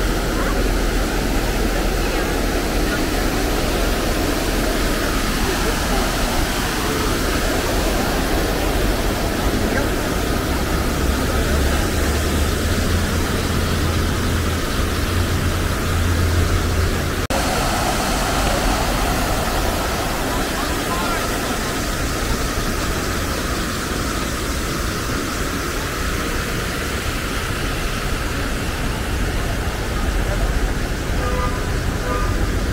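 Outdoor plaza ambience: the steady splashing of a large fountain mixed with the voices of passers-by and a hum of city traffic. There is a brief dropout about seventeen seconds in.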